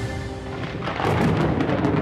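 A low rolling rumble of thunder swells about a second in, over background music that fades under it.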